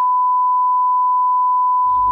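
A single steady, loud 1 kHz electronic test tone, one pure pitch held without change. Music begins faintly underneath near the end.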